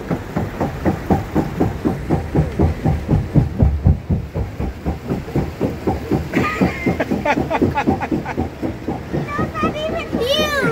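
Rhythmic clacking of a rapids-ride raft riding a roller conveyor lift, about five clacks a second, steady throughout.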